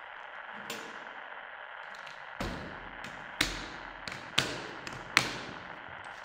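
Hard plastic equipment case being handled: a soft knock under a second in, then four sharp clacks about a second apart, each with a short ringing tail, over a steady hiss.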